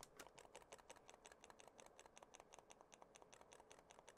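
Computer keyboard's Delete key being tapped rapidly and repeatedly, about nine faint clicks a second, to enter the BIOS setup while the PC boots.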